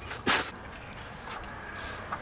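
Push broom sweeping polymeric sand across concrete pavers: a short scratchy stroke about a quarter second in, and a fainter one near the end.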